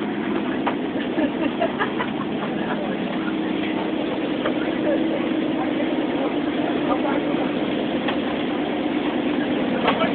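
A monster bus's 350 V8 engine droning steadily, heard from inside the passenger cabin during the ride, with a few light rattles.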